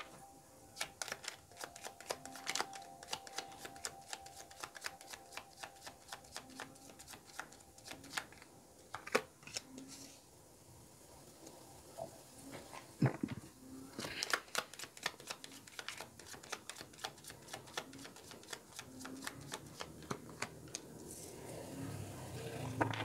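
A deck of Lenormand-style cards being shuffled by hand, with quick runs of crisp card clicks in several bursts and a few louder single taps.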